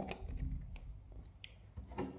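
Faint handling of a deck of cards: a few light clicks and rustles as the deck is lifted and turned over in the hands.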